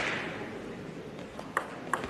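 Crowd noise in the hall dies down over the first half-second. A table tennis serve then starts, with three sharp clicks of the ball on bat and table in the last half-second.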